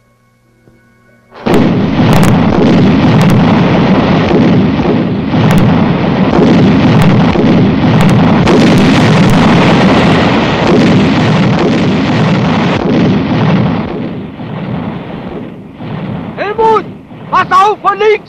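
Battle sound effects. After a quiet second and a half, a sudden, continuous, loud din of explosions and gunfire sets in with sharp strokes through it. It eases near the end, where men's voices shout.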